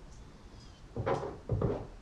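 A silicone spatula knocking twice against glassware as mayonnaise is scooped, two short knocks about half a second apart.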